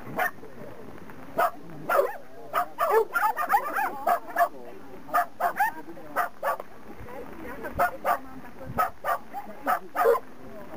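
A dog barking repeatedly in short, sharp barks, about two a second, while running an agility course. A voice calls out between the barks.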